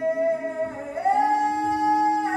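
Slow singing in a church, with long held notes that step up to a higher note about a second in.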